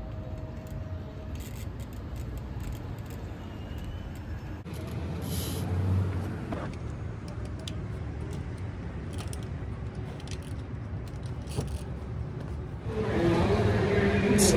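Steady low rumble of parking-lot ambience with distant traffic, with scattered light clicks and knocks from a BMX bike being handled and assembled.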